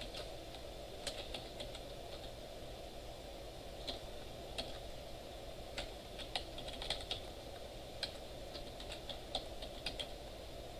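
Computer keyboard being typed on: irregular short runs of keystrokes with pauses between them, over a steady low background hum.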